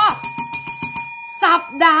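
A bell chime struck once, ringing on with several clear steady tones. The higher tones die away after about a second, while the lowest ones keep sounding under the voice.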